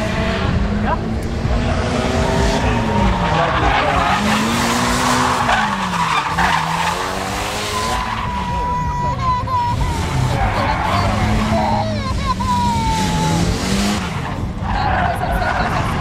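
Drift car's engine revving up and falling back again and again as it slides through the course, with tyres skidding; a high wavering tyre squeal stands out from about eight to thirteen seconds in.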